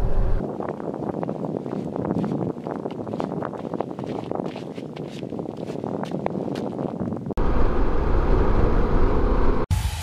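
Wind rush and road noise from a Harley-Davidson Pan America coasting at highway speed in neutral, with frequent small crackles. About seven seconds in it cuts abruptly to a louder, deep, steady wind rumble on the microphone.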